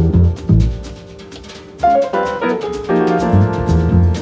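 Jazz piano trio playing: grand piano with double bass and drum kit. The band drops out briefly about a second in, then comes back in together just before the two-second mark.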